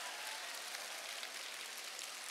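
Audience applause, a steady even patter of many hands, easing slightly.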